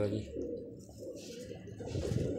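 Domestic pigeons cooing low and steadily, just after a voice trails off at the start.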